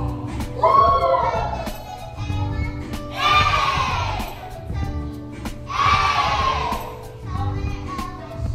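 Group of children singing along to a backing track with a steady beat. Two loud group shouts of about a second each come around three and six seconds in: the song's shouted sound-effect calls.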